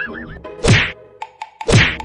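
Two cartoon-style whack sound effects added in editing, about a second apart, each a sharp hit that sweeps down in pitch. They are preceded by a short warbling tone.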